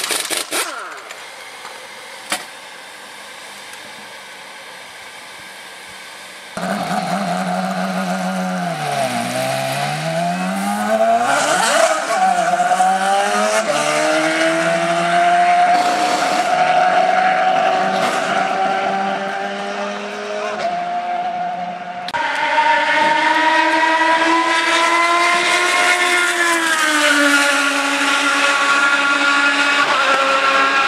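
Honda V8 engine of an IndyCar coming in suddenly about six seconds in. Its note dips low, then sweeps sharply up as the car pulls away, and holds a steady, slowly rising pitch. From about 22 seconds a louder steady engine note carries on, dropping slightly near the end.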